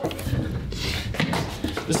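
A hand grabbing the knob of a locked door and rattling it, with clicks and knocks from the latch as the door fails to open.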